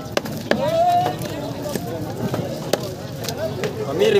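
A long knife chopping and cutting into a bubara (trevally) on a wooden chopping block: a run of irregular sharp chops, with voices in the background.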